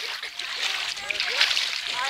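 Reservoir water sloshing and splashing as people move about in it, with short bursts of splashing stronger in the second half, and faint voices behind.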